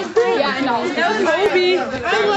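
Several young people's voices talking and exclaiming over one another, with a higher-pitched voice near the end.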